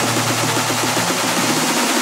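Hardstyle track build-up: a rapidly repeating synth hit that speeds up into a roll over a loud white-noise sweep, with the low bass note dropping out about one and a half seconds in.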